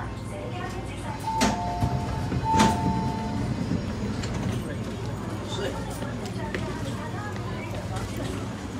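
MTR East Rail line train doors opening: two clicks about a second apart, each with a short two-note chime. Passengers' voices and a steady low carriage hum run beneath.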